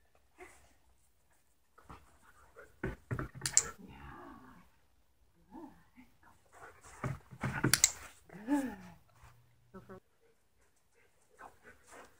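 A dog moving about and panting, with sharp knocks about three seconds in and again around seven to eight seconds in.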